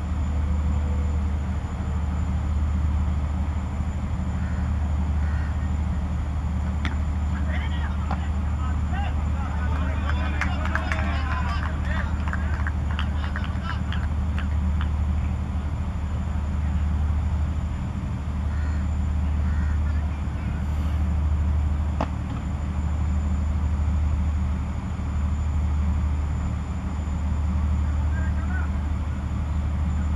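A steady low rumble, with distant shouts and calls from the cricket players around ten seconds in and a single sharp knock a little past twenty seconds.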